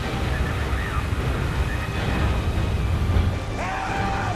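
Film soundtrack of churning river water with a deep, steady rumble, and a man's yell beginning near the end.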